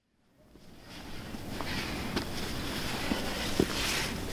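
Silence, then from about half a second in, wind rumbling on the camera microphone fades in and holds steady, with a few faint clicks and knocks.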